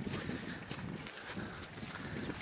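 Footsteps of a person walking through grass, the grass swishing against the feet at each step.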